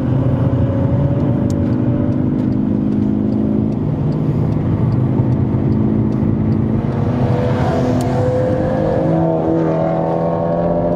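Volkswagen Golf GTI Edition 35's turbocharged four-cylinder engine pulling hard on track, heard inside the cabin with road and tyre noise. The engine pitch climbs over the last few seconds as the car accelerates.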